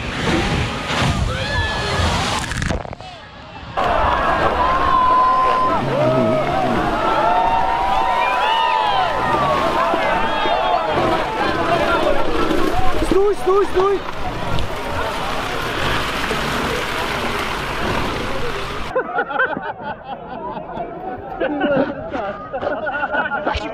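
An off-road 4x4 charges through a muddy water pit with a loud splash of water and mud, then a crowd of spectators shouts and cheers for much of the time. Near the end the sound turns thinner and muffled.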